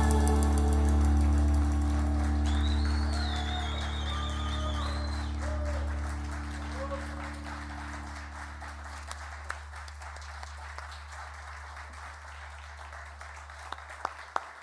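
The last chord of a live band, guitar and bass among it, rings out and slowly fades away, while an audience claps and cheers, the applause standing out more as the chord dies.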